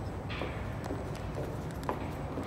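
Footsteps on the hard floor of a long pedestrian tunnel, a series of irregular knocks with a sharper one near the end, over a steady low rumble.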